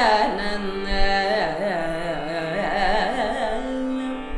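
Female Carnatic vocalist singing a phrase full of gliding, oscillating ornaments (gamakas) over a steady drone, settling on a briefly held lower note near the end.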